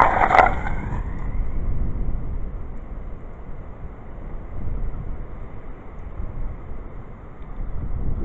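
Liquid difluoroethane from a computer duster can poured into a tin can of hot water and flash-boiling in one sudden burst of noise that fades within about a second. A low wind rumble on the microphone follows.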